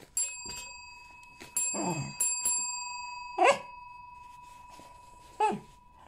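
Chrome service desk bell struck by a Cavalier King Charles spaniel's paw, four quick dings in the first few seconds, each ringing on. The dog gives a few short barks that fall in pitch, one amid the rings and two more later, the last near the end.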